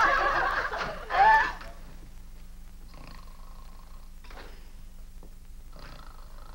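Women's laughter trailing off within the first second and a half, then a low steady hum with a few faint, brief sounds.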